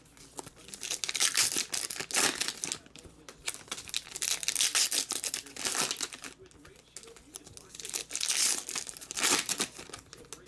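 Foil trading-card packs being torn open and their wrappers crinkled by hand, in a run of short, irregular rustling bursts.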